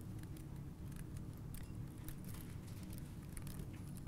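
Faint, scattered clicks of a computer keyboard being typed on, over a steady low room hum.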